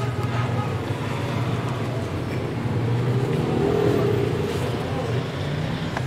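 Steady low rumble of road traffic, with faint voices mixed in.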